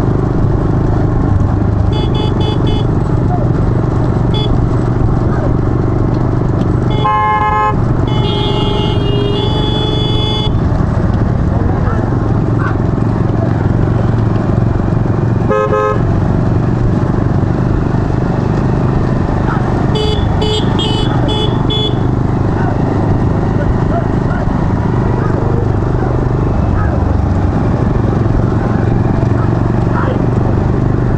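A pack of motorcycles running close behind racing bullock carts, their engines a steady drone, with horns honking again and again: short toots near the start and about two-thirds of the way in, and a longer blast about a third of the way in. Men's voices shout over the engines.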